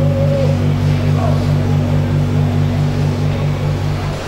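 A steady low hum with one note pulsing about four times a second. It cuts off suddenly right at the end.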